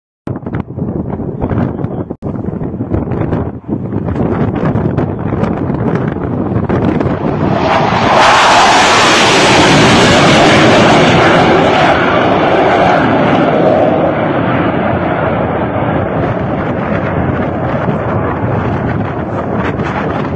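Wind buffeting the microphone, then, about eight seconds in, the jet roar of a pair of Sukhoi Su-25 attack aircraft passing low and close. The roar rises sharply, is loudest for the next few seconds, then slowly fades as the jets draw away.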